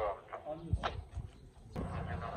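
A man's voice trailing off outdoors, then a few short knocks and clicks. A steady low background starts abruptly near the end.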